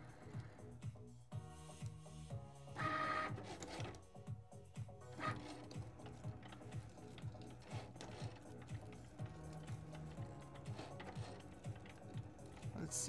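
Cricut Maker cutting machine running a cut: its carriage and roller motors whir and step like a printer, with a brief higher whine about three seconds in. Soft background music plays underneath.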